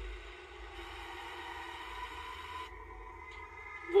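A low, steady, slightly wavering drone with a faint higher tone above it: the horror film's quiet, tense sound bed. The upper hiss drops away about two-thirds of the way through.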